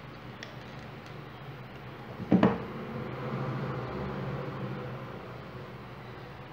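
A few faint clicks, then a loud double knock a little over two seconds in as a hot glue gun is set down on a tabletop, followed by a soft rushing noise that swells and fades over a steady low hum.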